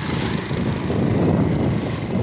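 Wind buffeting the microphone and road rumble from moving along a rough road, as a vehicle passes close by. The low rumble swells toward the middle.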